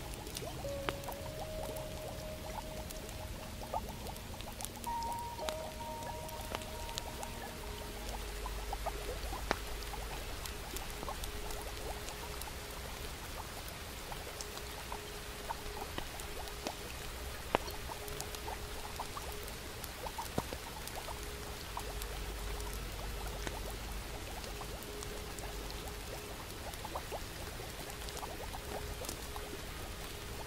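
Layered cottage ambience: a log fire crackling with scattered sharp pops over a steady hiss of rain. Soft music plays quietly, a few held notes in the first seconds giving way to one long steady low note.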